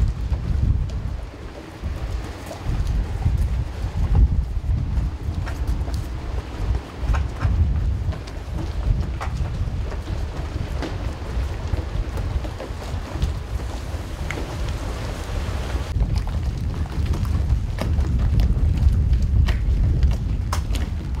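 Wind buffeting an outdoor microphone: an uneven, gusting low rumble, with a few faint knocks and ticks.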